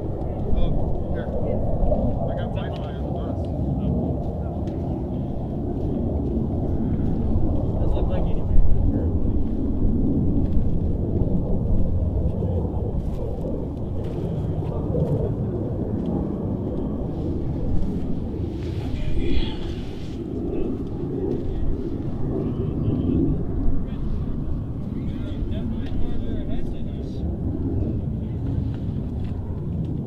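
Wind buffeting the microphone outdoors: a steady low rumble that swells and eases, with faint distant voices underneath.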